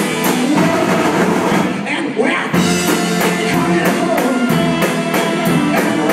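Live rock band playing with electric guitar, accordion and drum kit over a steady cymbal beat. About two seconds in the drums drop out briefly, then the full band comes back in.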